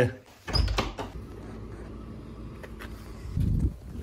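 A vehicle engine idling with a steady low rumble, starting about half a second in.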